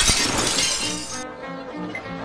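A shattering sound effect, like glass breaking, hits at the start and fades away over about the first second. Slow, low music notes play under it.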